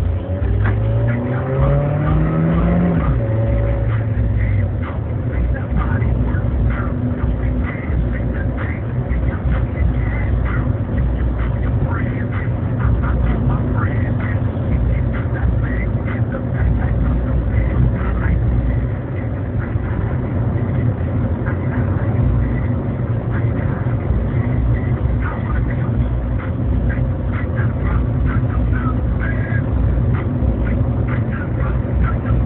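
Car engine heard from inside the cabin while driving: its pitch rises under acceleration over the first three seconds, then drops back and settles into a steady drone, with road noise and scattered clicks and rattles throughout.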